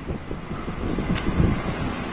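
Rumbling wind and handling noise on a phone microphone as it is carried and moved about, with a sharp click about a second in.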